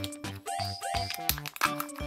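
Bouncy background music with a steady repeating beat, over the crinkle of the thin foil seal being peeled off a Kinder Joy egg's plastic toy capsule.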